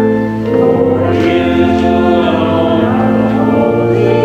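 Choir singing slowly, holding chords that change about once a second.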